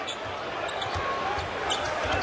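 A basketball being dribbled on a hardwood court, a few sharp bounces, over steady arena crowd noise.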